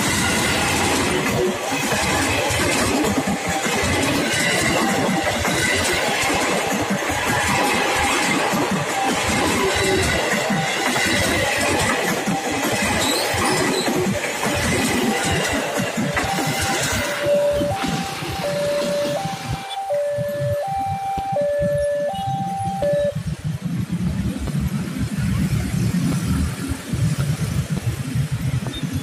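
JR 205 series electric commuter train passing close over a level crossing, its wheels clattering over the rails and crossing for about the first seventeen seconds. Once it has passed, the crossing's warning alarm alternates between a higher and a lower tone and stops about 23 seconds in. Motorcycle engines follow as the waiting traffic moves off across the tracks.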